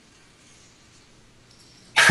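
Faint, steady background hiss of an open Skype call line from an outdoor headset microphone; a laugh starts right at the end.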